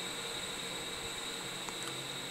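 Steady machinery hum with a thin, constant high whine from the biomass boiler plant, with no knocks or changes.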